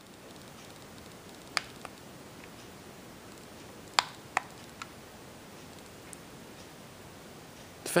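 52-inch Hampton Bay Renwick ceiling fan running on low speed, a faint steady whoosh of moving air and motor. A few sharp clicks come through, the loudest about four seconds in.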